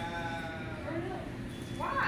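Indistinct voices of people talking at a fast-food counter, one voice drawn out at the start and another rising near the end, over steady restaurant background noise.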